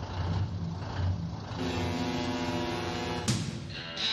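Heavy truck sound effect: a low engine rumble, then a steady pitched horn-like blast lasting about a second and a half, cut off by a sharp hit near the end.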